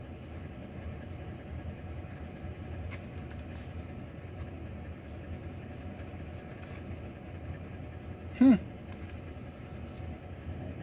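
Steady low rumble of a semi truck's idling engine, heard inside the sleeper cab. There is a faint click about three seconds in and a short voiced 'hm'-like sound about eight and a half seconds in.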